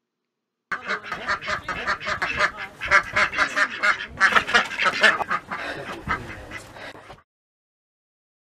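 A small group of domestic ducks, mallards and a white duck, quacking in a rapid, continuous chatter. It starts about a second in and stops abruptly near the end.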